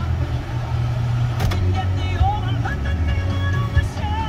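Music with a singing voice playing on the car radio, heard inside the car's cabin over the steady low rumble of the car pulling away.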